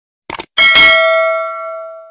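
Subscribe-animation sound effect: a quick pair of mouse clicks on the notification bell icon, then a bell ding of several ringing tones that fades out over about a second and a half.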